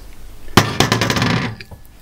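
A ceramic bowl clinks sharply against another ceramic bowl as diced raw chicken is tipped into the marinade, followed by about a second of rapid scraping and clattering of the bowls.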